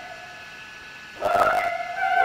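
Live opera concert music: a sung note dies away into a brief lull, then the music comes back in with a sudden, sharply accented attack about a second in.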